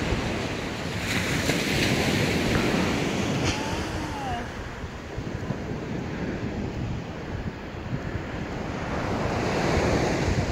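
Atlantic Ocean surf breaking and washing on a sandy beach, a steady rushing wash that swells and eases, with wind buffeting the microphone.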